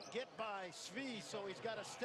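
Faint speech at a low level, most likely the basketball game broadcast's commentary playing quietly under the video call.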